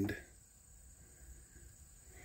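A man's voice trailing off at the very start, then near silence with only faint low background noise.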